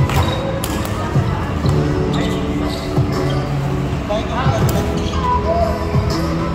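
A volleyball being played: several sharp slaps of hands and forearms striking the ball during a rally, with players calling out and music playing in the background.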